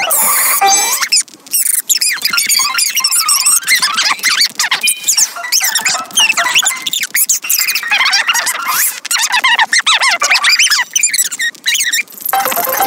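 Cartoon soundtrack sped up four times: the characters' voices and the music are raised high in pitch into rapid, squeaky chipmunk-like chatter that never stops.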